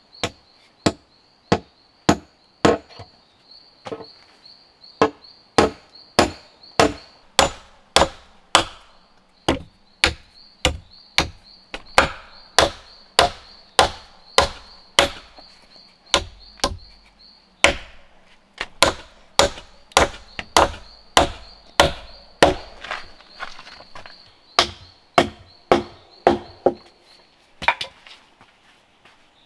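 Wooden mallet pounding on the logs of a log bed frame: steady, sharp wood-on-wood strikes, roughly three every two seconds. A faint high insect drone sits behind them and drops out briefly just past halfway.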